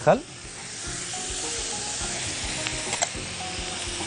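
Eggplant slices and green chili peppers deep-frying in a pan of hot oil: a steady sizzle throughout, with a couple of small clicks about three seconds in.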